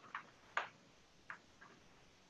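A few faint, sharp clicks of metal type sorts being picked from the type case and set into the line of type, spread irregularly over two seconds.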